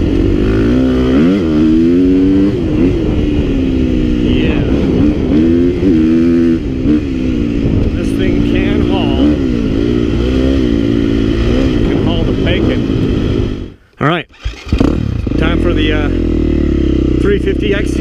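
KTM 350 XC-F dirt bike's single-cylinder four-stroke engine running under load on a trail ride, its pitch rising and falling again and again with the throttle. The sound cuts out for about a second near the end.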